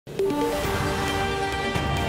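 Theme music of a TV news channel's programme intro, starting abruptly just after the opening and carrying on with held synthesized notes over a pulsing bass.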